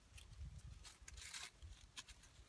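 Near silence with a few faint, brief rustles of strips of cedar inner bark being twisted between the fingers into cordage, over a faint low rumble.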